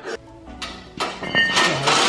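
A cordless DeWalt driver running on a bolt of a car lift's overhead steel crossbeam: a dense, loud rattle that starts about a second in and builds, over background music.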